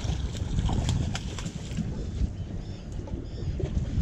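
A hooked bluefish thrashing and splashing at the water's surface beside the boat, with a run of short splashes and knocks in the first two seconds, over steady wind rumble on the microphone.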